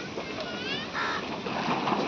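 Busy open-air ambience: a steady haze of wind or surf noise with background voices and short bird calls.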